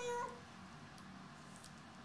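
A single short cat meow, steady in pitch and brief, right at the start, followed by faint room tone.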